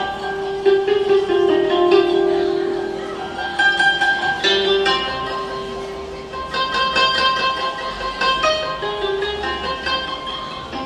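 Japanese koto being played solo: plucked strings ringing and fading, a long held note in the first few seconds, then quicker flurries of plucked notes.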